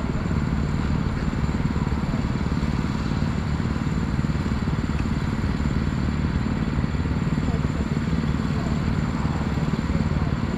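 Rotax two-stroke kart engine idling steadily while the kart sits stationary, heard close up from the onboard camera.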